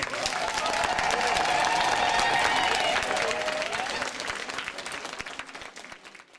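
Audience applauding after the music stops, with one long held shout from a spectator over the clapping until about four seconds in. The applause then fades away.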